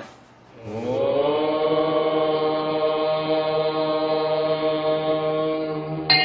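A voice chanting one long held note: it slides up into pitch about half a second in, then holds steady on a single tone.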